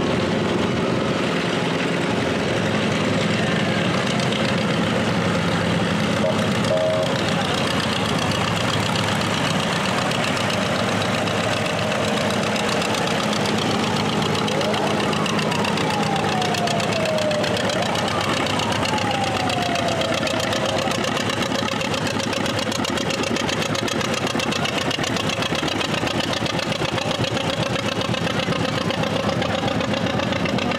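Engines of vintage farm tractors running steadily at low speed as they roll past in a line.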